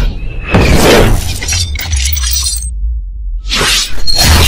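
Cinematic intro sound effects: swelling sweeps and sharp crashing impacts over a deep, steady bass rumble. The high end drops away for a moment late on, then a rising sweep builds into another hit at the very end.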